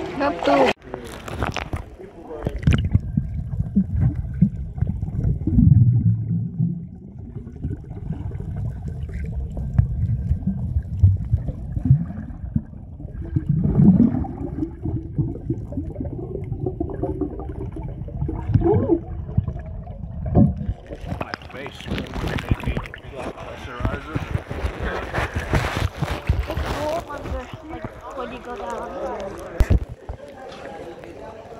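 Water heard underwater: a muffled rumble with gurgling and churning from a snorkelling swimmer's movements. About two-thirds of the way through, the sound opens up into splashing and sloshing at the water's surface.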